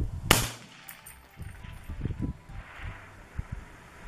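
A single scoped rifle shot about a third of a second in, followed by a few low thumps and rumbles.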